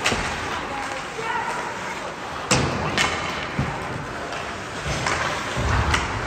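Ice hockey play in an indoor rink: two sharp cracks about half a second apart, a little before the middle, then lighter knocks and a low thump near the end, over the voices of spectators.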